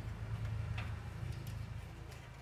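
A few light clicks as the glass fluorescent backlight tubes and their plastic holders of an LCD TV are handled, over a low steady hum.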